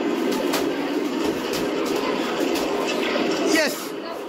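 Several children's voices shouting and calling over one another in a continuous jumble, with a few sharp clicks mixed in. It dies down just before the end.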